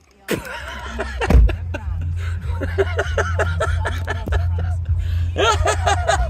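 A man laughing in a run of short bursts, each falling in pitch, over a low steady rumble that starts about a second in.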